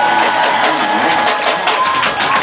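Live rockabilly trio playing loud in a small club: electric guitar, slapped upright bass and drum kit, with crowd noise from the audience.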